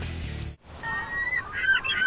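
Background music cuts off about half a second in. Then birds start calling: one long steady call, followed by a quick run of short calls that rise and fall in pitch.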